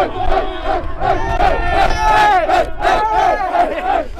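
A men's lacrosse team yelling and shouting together in a huddle, many raised male voices overlapping in a continuous hype-up roar.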